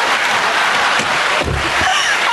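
Studio audience applauding and cheering, with a low thud about a second and a half in.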